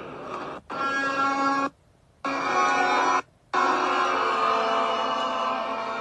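Music with long held notes, cutting out to total silence three times: the dropouts of a live stream relayed over a poor connection.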